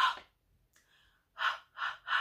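A woman sounding out the letter H as short, breathy 'h' puffs of breath: one at the start, then two close together about a second and a half in.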